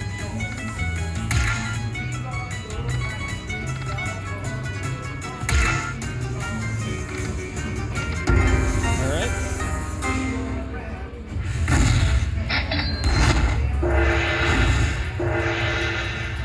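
Dragon Link slot machine playing its free-games music, with sharp knocks as the reels stop. About eight seconds in a louder, deeper sound sets in as the free spins finish, and near the end a run of steady bright notes plays as the win comes up.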